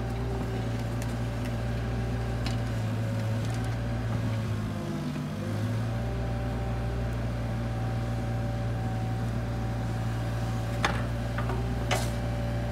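Bobcat mini excavator's diesel engine running steadily while digging, its pitch sagging briefly about halfway through and then recovering. A sharp knock sounds near the end.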